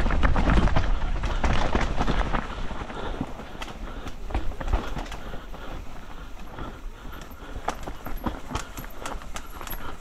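Mountain bike rattling down a rough dirt trail: tyres rolling over roots and stones, with frequent irregular knocks from the bike over the bumps. Wind rumbles on the microphone, and the ride is loudest in the first few seconds.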